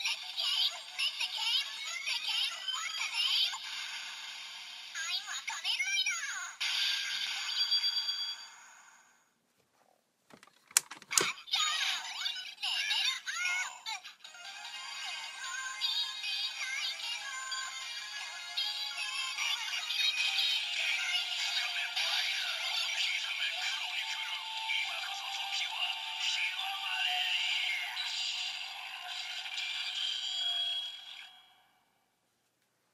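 DX Gamer Driver toy belt with the Kamen Rider Chronicle Gashat playing its electronic music and synthesized announcer voice through a small tinny speaker, with no bass. After a short pause about ten seconds in, a couple of sharp plastic clicks as the lever is swung open, then the belt plays another long stretch of music and voice.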